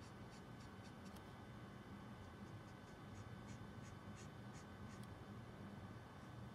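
Faint, quick strokes of a Copic Sketch marker's brush nib on smooth blending card, about three or four a second, as the green ink is flicked upward to blend it.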